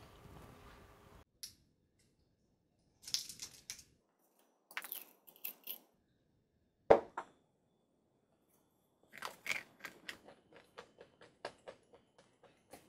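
Small tablets are handled and tipped from a plastic pill bottle, with one sharp click, followed by a run of small crunches as the tablets are chewed without water.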